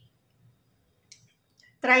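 A pause between a woman's spoken phrases: near silence with one short faint click about a second in, then her voice starts again near the end.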